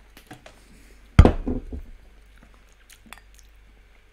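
A man sipping dark beer from a glass and tasting it: mouth and swallowing noises, with one loud, sudden mouth sound about a second in that dies away within a second. A few faint clicks are heard around it.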